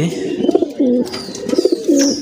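Domestic pigeons cooing in a cage, several overlapping wavering coos.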